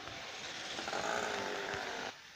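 A small motor vehicle engine, such as a motorbike's, running in street traffic close by, getting louder about halfway through.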